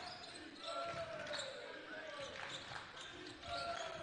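Basketball bouncing on a hardwood court during a stoppage in play, with faint voices in the gym.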